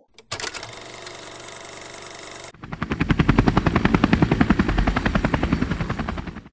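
A steady drone, then from about two and a half seconds in a rapid, even pulsing of about ten beats a second, heavy in the bass, like a helicopter rotor's chop or automatic gunfire.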